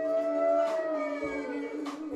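A long wordless vocal call on one held note that rises a little and then falls away, over the band's steady ukulele and bass chord.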